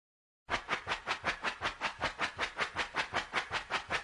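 A steady train of short, even pulses of noise, about five a second, starting half a second in.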